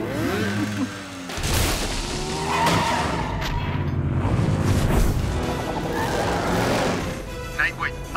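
Cartoon chase sound mix: action music with vehicle engine effects. A heavy, noisy burst of effects including a boom begins about a second and a half in.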